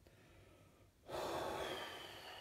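A man's heavy breath through the mouth, starting suddenly about a second in, loud and long.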